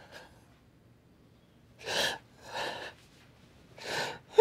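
A young man crying, drawing short sobbing breaths: two in the middle and another at the end.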